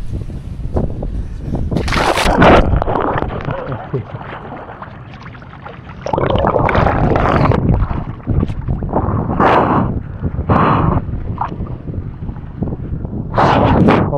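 Pool water splashing and sloshing close to the camera, in irregular loud surges with quieter stretches between.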